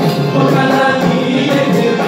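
Several men singing a Bengali folk song together, with a strummed banjo and hand percussion keeping a steady beat.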